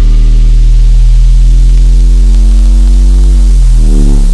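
Drum and bass music: a loud, sustained synth bass note with a deep sub-bass, held with no drums. Its pitch slides down near the end.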